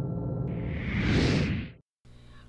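Bumper music with low sustained tones. About half a second in, a whoosh transition effect swells up and fades out, and the sound cuts to silence just before the end.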